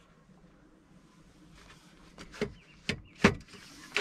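Metal central rafter of a Fiamma F80S awning being slotted onto its hooks and slid into place under the canopy: a short scraping slide, then a few sharp clicks and knocks, the loudest about three seconds in.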